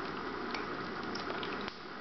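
Steady hiss of room and recording noise, with a few faint, soft clicks.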